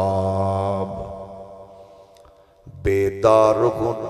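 A man chanting a line of Urdu verse into a microphone in a slow melodic style. He holds one long steady note that fades away about two and a half seconds in, then starts the next line near the end.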